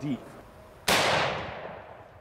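A single rifle shot about a second in, from a Henry All-Weather lever-action rifle in .45-70 firing a solid-brass Underwood Xtreme Penetrator bullet. The report dies away over about a second.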